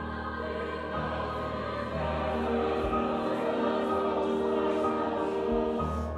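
A choir singing held chords with grand piano accompaniment, growing fuller and louder about two seconds in.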